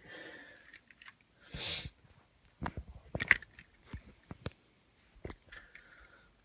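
A motorised LEGO truck's electric motors whining briefly at the start and again near the end, with a short rushing burst and a scatter of sharp clicks and knocks in between.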